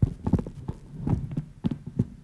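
A quick, irregular run of thumps and knocks close on a table microphone, about a dozen in two seconds, over a low hum. This is typical of the microphone being handled or pulled into place just before someone speaks into it.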